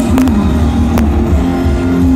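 Live rock band playing loud through a stadium PA: distorted guitars and bass hold low sustained notes under a few sharp drum hits, one about a second in.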